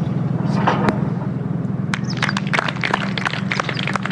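A steady low hum runs throughout, with scattered sharp clicks from about halfway on.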